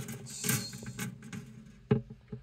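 Handling noise from a phone camera inside an acoustic guitar's wooden body: scraping and rubbing against the wood, with a short scrape about half a second in and a sharp knock near the end.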